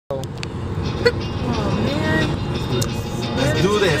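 Steady road noise inside a moving car's cabin, with brief voices and a sharp click about a second in.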